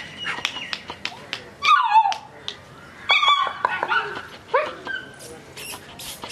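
Corgi puppies yapping and whining in short high calls, the loudest a falling yelp about two seconds in and another burst of yaps about three seconds in, with light clicks and rattles from paws on the wire pen.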